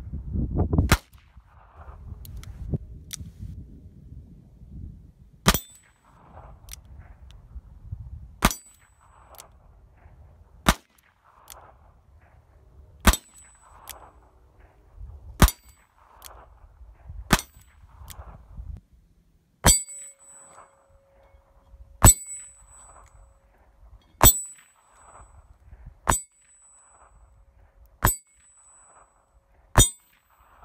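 A .22 LR Smith & Wesson Model 17-3 double-action revolver fired a dozen or so times at a steady pace, about one shot every two seconds. Each sharp crack is followed a moment later by the ding of the bullet hitting a steel target.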